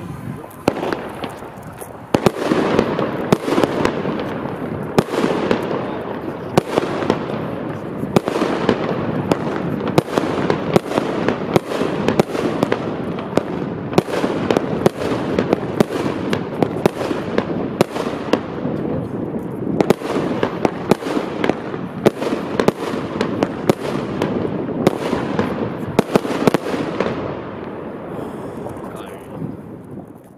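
Röder Feuerwerk Goldblume firework battery firing gold comets: a fast, unbroken run of launch shots and bursts for nearly half a minute, tailing off near the end.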